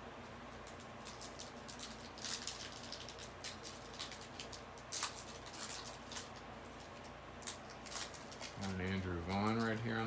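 Foil trading-card pack wrapper crackling and crinkling in quick irregular snaps as a pack is handled and torn open. Near the end a man's voice sounds briefly.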